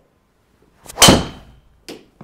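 Golf driver striking a teed ball: one sharp, loud crack about a second in, with a short metallic ring from the clubhead. A softer knock follows just under a second later.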